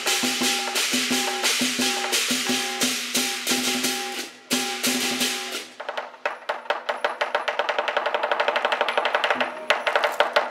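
Lion dance percussion band of big drum, cymbals and gong beating a steady rhythm. About six seconds in the cymbals drop out and the drum goes into a fast roll that grows louder.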